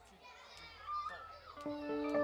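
Faint voices, then about one and a half seconds in the band starts its next song with a run of plucked, ringing notes.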